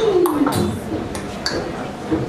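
A few sharp clinks of tableware over voices in the room; the clearest clink, about one and a half seconds in, rings briefly.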